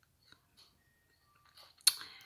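Faint lip and tongue clicks close to a phone microphone during a pause in speech, then a louder sharp mouth click with a short breath near the end.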